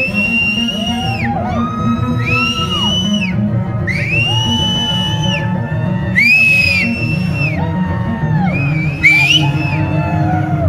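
Electric bass played solo through a loud, distorted live rig: long held high notes in two voices, each lasting about a second and ending in a downward slide, one after another.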